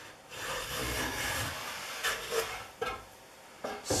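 Stanley Bedrock No. 605 hand plane pushed along the edge of a poplar board, its iron shaving the wood in one long scraping stroke of about a second and a half, followed by a couple of shorter scrapes and a click. On this rough, ripply edge the blade is only skipping over the high spots.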